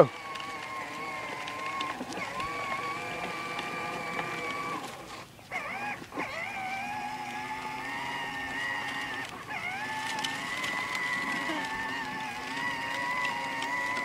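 Electric motor and gearbox of a battery-powered Kawasaki ride-on toy quad whining steadily as it drives. It cuts out about five seconds in, then spins back up with a short rising whine, and dips once more near ten seconds.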